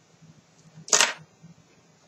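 A single short, sharp click from a cigarette lighter about a second in, while a cigarette is being lit.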